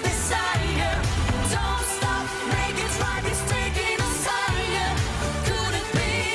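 Pop duet sung live over a band backing with heavy bass and a steady beat, cymbal strokes recurring about once a second.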